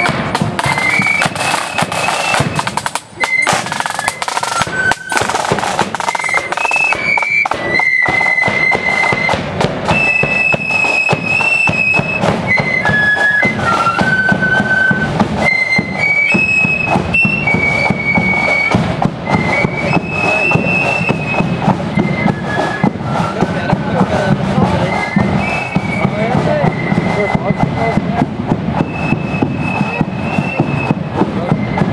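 A marching flute band playing a melody on flutes over side drums.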